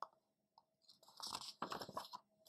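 A picture-book page being turned by hand: paper rustling and crinkling for about a second, starting about a second in.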